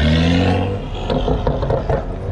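BMW 3-series sedan's engine revving as the car accelerates away, the pitch rising for under a second before it eases off, followed by a few short sharp cracks.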